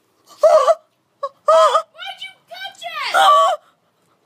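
A woman's string of short, high-pitched cries and wails, the longest near the end: she is in pain after catching a hard-thrown piece of bread that tore her fingernail.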